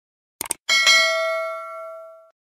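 Subscribe-button animation sound effect: a quick double mouse click, then a notification bell dings once and rings away over about a second and a half.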